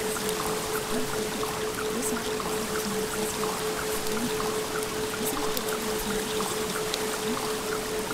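A steady 432 Hz tone, the carrier of a theta-wave subliminal track, held over a continuous bed of trickling, pouring water with small scattered droplet ticks.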